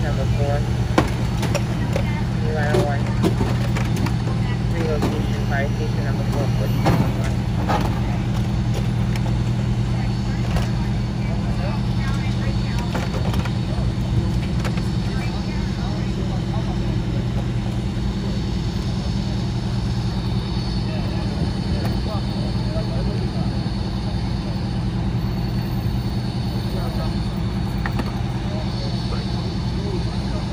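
A steady, low engine drone, an engine running at idle, with crew voices talking in the background and a few light knocks.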